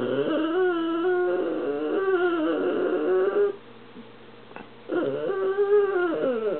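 A dog making long, drawn-out whining vocalizations with a wavering pitch: one call of about three and a half seconds, then a second one starting about five seconds in.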